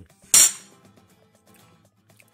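A single sharp clink of a metal spoon against a ceramic plate, about half a second in, with a brief ringing tail.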